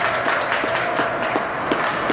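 Ice hockey play on an indoor rink: skates scraping and sticks clicking sharply against the ice and puck several times, over a steady hubbub of spectators' voices in the arena.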